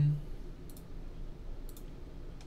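Two faint, light clicks about a second apart, over a low steady hum.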